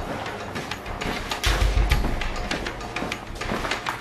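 Low rumble of water moving through the building's pipes, loudest about a second and a half in, over light clicks and steps.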